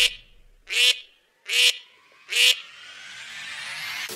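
Duck quacking: four short quacks about 0.8 s apart, followed by a faint rising tone.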